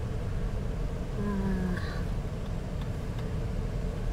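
Steady low rumble of a car's engine and tyres heard from inside the moving car, with a brief pitched, call-like sound a little over a second in.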